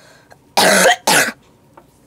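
A person coughing twice in quick succession, two harsh coughs about half a second apart, the second shorter. The coughs come from a cold that has lasted about three weeks.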